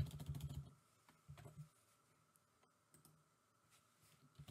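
A few faint keystrokes on a computer keyboard, bunched in the first two seconds.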